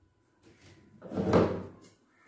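A single rustling, scraping swell of sound, loudest a little past a second in, as the dress fabric and scissors are handled on the cutting table.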